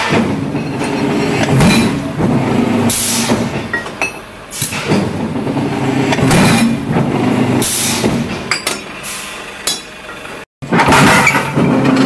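A metal-forming press running with a steady low hum, with a sharp metallic clank about every second and a half as its die works a steel plate. The sound drops out for a moment near the end and picks up again on a similar machine.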